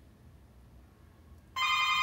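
Doorbell ringing: a steady electronic tone that starts suddenly about a second and a half in, after quiet room tone.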